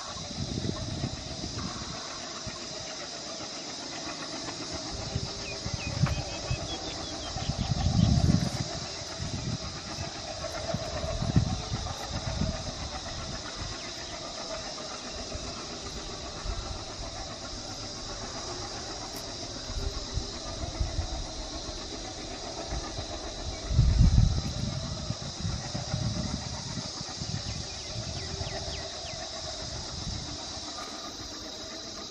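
Passenger train hauled by twin WDG3A ALCO diesel locomotives moving away up a gradient, heard from a distance: a steady engine drone under a constant high hiss. Low rumbles swell and fade at times, loudest about eight and twenty-four seconds in.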